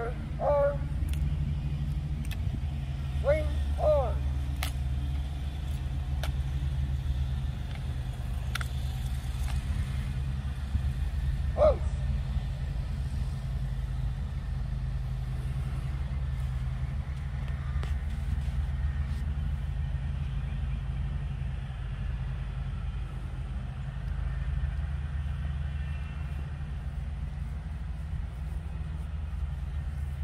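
Steady low outdoor rumble, like distant traffic or wind on the microphone, with a few short pitched sounds near the start, about three to four seconds in and near twelve seconds, and scattered faint clicks.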